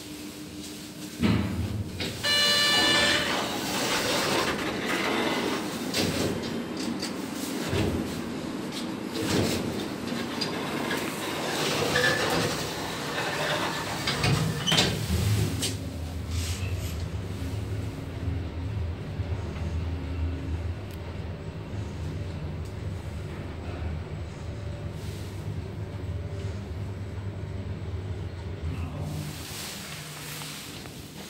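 A 1992 Semag traction elevator heard from inside the car: a knock about a second in, then a loud electronic tone lasting about a second, then the car running with mechanical rumble that gives way to a steady low hum in the second half.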